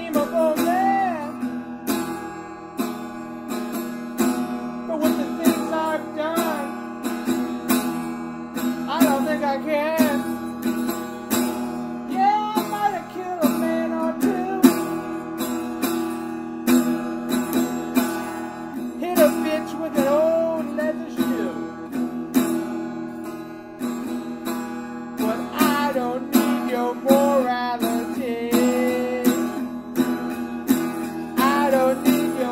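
Acoustic guitar strummed in a steady rhythm, with a wavering, gliding melody line over it.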